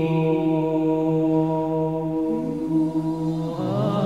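Men's voices singing a nasheed: a long held note over a low sustained hum. About two seconds in a second voice slides up, and near the end the melody dips and moves into a new phrase.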